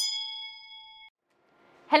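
A single bright bell ding, the chime sound effect of a subscribe-button animation, ringing for about a second before it cuts off suddenly.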